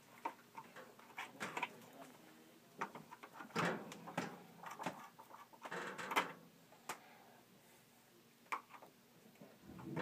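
Screwdriver working the terminal screws of an electric water heater element as the wires are unhooked: scattered faint metal clicks and scrapes.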